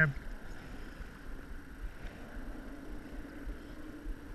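Steady outdoor background: wind rumbling on the microphone, with a faint, even, engine-like drone underneath and no distinct splash or reel sound.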